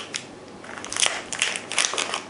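A light tap as a small plastic whistle is set down on a table, then a plastic-wrapped elastic bandage is picked up and handled, its wrapper crinkling from about a second in.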